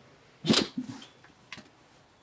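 A dog gives one short, sharp sound about half a second in, followed by fainter rustles and a light click.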